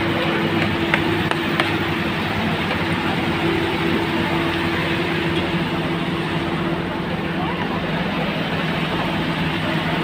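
Busy crowd of guests talking over one another, with a constant low droning hum beneath and a few light clicks near the start.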